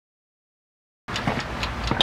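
Dead silence for about the first second, then a low rumble and hiss with a few faint clicks starts abruptly.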